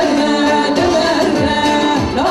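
A woman singing a Kurdish song live through a microphone, holding long wavering notes over amplified band accompaniment with a regular low drum beat.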